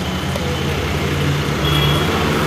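A motor vehicle engine idling, a steady low hum.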